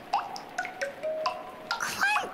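Raindrops plinking on a tent, each drop ringing as a short pitched note, so that the irregular string of drips makes a light, chime-like tune.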